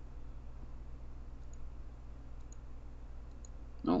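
A few faint computer mouse clicks, about a second apart, over a steady low hum.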